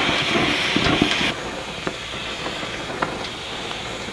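Oxy-acetylene cutting torch flame hissing steadily as it plays over a steel disc blade, with a few faint ticks. The hiss drops noticeably in level about a second in.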